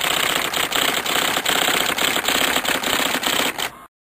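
Typewriter typing: a rapid, continuous clatter of key strikes that stops suddenly near the end, as a line of text finishes being typed out.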